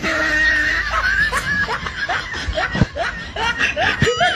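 Laughter: a string of short, high-pitched "ha" sounds, each rising in pitch, repeating several times a second.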